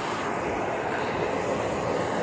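Steady background noise of idling vehicles and street traffic, with no distinct events.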